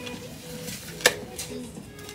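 Light handling noise from a boxed item held in the hands: soft rustling and small clicks, with one sharp click about a second in.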